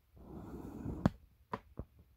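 Handling noise of a phone being repositioned while it films: a soft rustle, then one sharp click and two lighter clicks.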